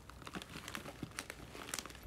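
Faint handling noise close to the microphone: small irregular clicks and crinkles, scattered through the pause.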